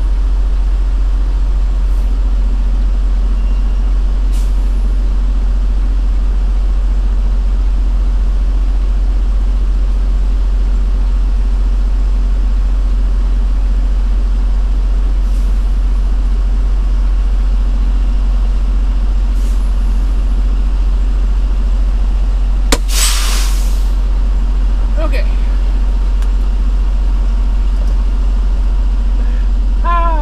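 A Detroit DD15 diesel engine idling with a steady low hum, heard from inside the truck's cab. About three-quarters of the way through, a sharp click is followed by about a second of hissing air from the truck's air brake system.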